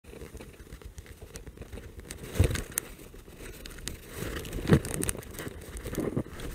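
Outdoor microphone noise with a low rough rumble and scattered clicks, and two louder knocks about two seconds apart, like handling noise on the camera.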